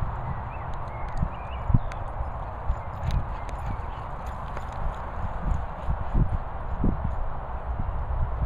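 Irregular low thumps and rumble over a steady outdoor noise haze, with a few faint high chirps about a second in.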